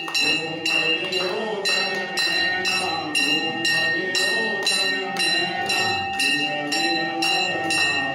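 A temple bell rung steadily, about two strikes a second, each strike leaving a bright ringing tone, over a group of voices singing devotionally.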